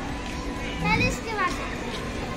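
Outdoor amusement-park background of children's voices and chatter, with a child's voice briefly about a second in.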